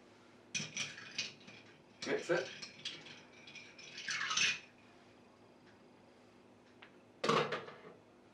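Metal bar spoon stirring ice cubes in a Collins glass: ice and spoon clinking against the glass in three short bursts, then a louder clatter near the end.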